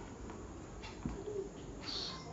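Quiet room with faint scratches of a marker writing on a whiteboard.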